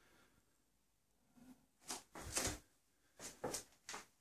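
Quiet room, then from about a second in a few soft, short rustles and knocks of someone moving about and handling the camera.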